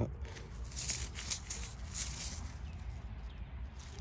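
A gloved thumb rubbing dirt off the top of a small dug-up metal plaque, a quick series of faint scratchy rubs that stops about two and a half seconds in.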